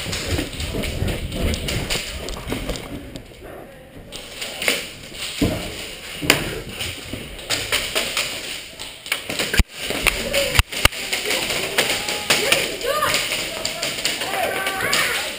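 Footsteps and gear knocking as a player moves, irregular taps and thuds, with a few sharp cracks about ten seconds in. Faint voices are in the background.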